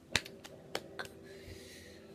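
Four short, sharp clicks about a third of a second apart, the first the loudest, over a faint low steady hum.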